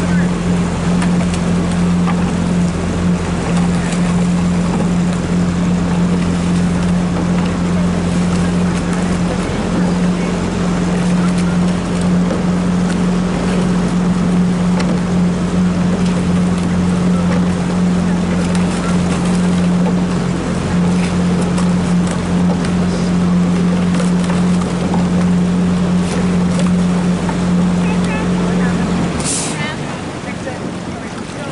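Outboard motor of a small boat running at a steady, even hum, with wind and water noise. The motor cuts out about a second before the end.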